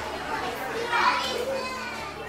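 Children's voices talking and calling out over one another, with no clear words.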